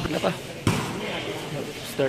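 A basketball bouncing on a concrete court: sharp bounces near the start and about two-thirds of a second in, with voices in the background.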